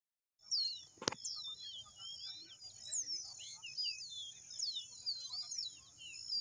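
Caboclinho (Sporophila seedeater) song: a quick run of short, clear whistled notes sliding up and down, over a steady high-pitched hiss. A single sharp click comes about a second in.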